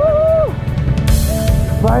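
A loud whooping cheer of joy that sweeps up in pitch and holds for about half a second, over background music with a steady drum beat and a low rumble; a short rush of hiss a little after a second in.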